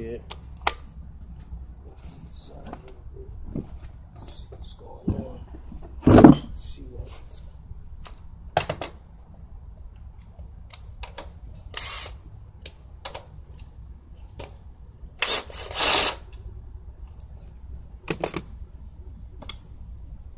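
Ryobi cordless drill with a socket, run in short bursts to remove bolts on a motorcycle, among clicks and clinks of tools being handled. A loud knock comes about six seconds in.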